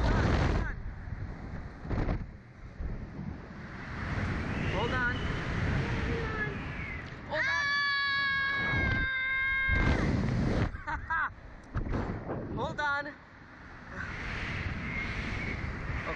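A young girl screaming on a slingshot thrill ride: a long high held scream about seven seconds in, shakier shorter cries around it, and another scream starting near the end. Gusts of wind blast across the ride-mounted microphone as the capsule swings, loudest at the start, about two seconds in and about ten seconds in.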